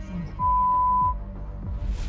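A single broadcast censor bleep: a loud steady 1 kHz tone lasting under a second, starting a little under half a second in, masking a swear word after an exclamation. Background music runs under it.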